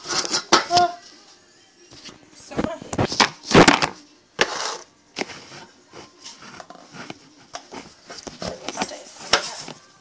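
Irregular knocks, clatter and rustling from things being handled and a handheld phone camera being moved about, loudest in two bursts near the start and about three and a half seconds in.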